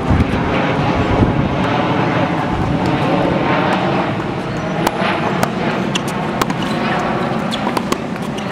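Tennis ball being hit with rackets and bouncing on a hard court during a rally: a series of sharp pops in the second half, over steady loud outdoor background noise.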